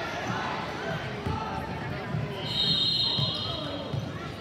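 A basketball bouncing on a hardwood gym floor in a series of thumps, under echoing voices from players and spectators. About two and a half seconds in, a brief high, shrill tone sounds for under a second.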